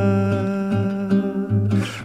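Bossa nova song: a male voice holds one long, steady note over a nylon-string guitar plucking a repeating bass line. The held note fades out just before the end.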